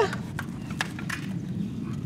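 A few light, sparse knocks and clicks over a steady low rumble.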